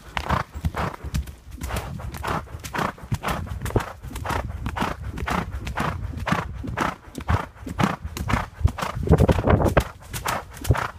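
Thoroughbred horse galloping on a dirt trail covered in dry leaves, its hoofbeats falling in a steady, even rhythm of about two to three beats a second.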